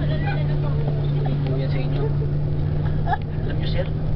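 Steady low drone of a bus's engine at one constant pitch, with faint talk over it.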